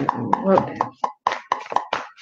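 A deck of oracle cards being shuffled by hand: a quick run of about seven soft card slaps, roughly four a second.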